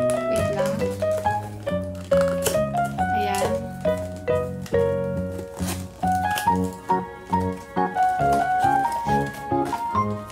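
Background music: a melody of short stepped notes over repeated bass notes, growing busier about halfway through.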